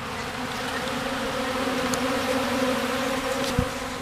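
Many honey bees buzzing close by, a steady hum that slowly swells, with a soft low bump near the end.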